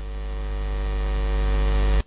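Steady electrical mains hum on the audio line: a low buzz with a stack of even overtones, growing slowly louder, then cutting off abruptly at the end.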